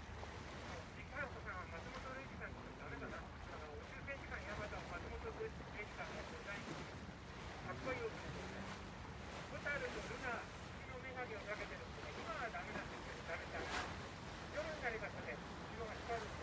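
Low, steady drone of a boat's engine with water and wind noise on the microphone, under indistinct voices talking.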